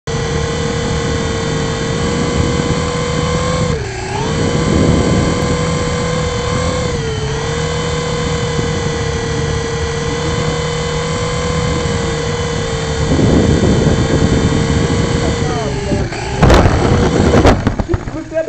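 Syma S107C mini RC helicopter's small electric rotor motors whining steadily, heard from its onboard camera, the pitch dipping briefly twice. Near the end come a quick run of knocks and clatter as the copter comes down, and the whine cuts off.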